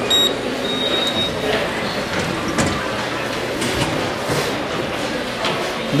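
Metro station ambience: a steady rumble and hiss with indistinct voices in the background, and a short high beep near the start.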